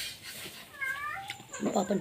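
A cat meows once, a short call about a second in.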